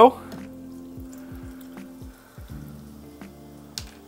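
Carbonated mineral water poured from a glass bottle into a glass over frozen mead ice cubes, a faint fizzing pour, with quiet background music underneath.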